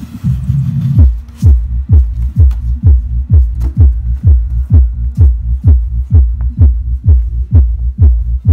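AVPro GD-12Pro powered subwoofer with a 30 cm driver playing dance music loudly: a steady low bass drone for about the first second, then a deep, punchy kick drum thumping about twice a second.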